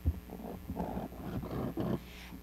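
Handling noise on a podium microphone as it is taken off its stand: a thump at the start, then a run of irregular rubbing and scraping noises.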